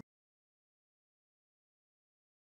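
Complete silence: the sound track is cut to nothing.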